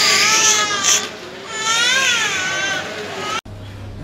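A baby crying in two long, high, wavering wails, the second starting about a second and a half in. The sound cuts off suddenly near the end.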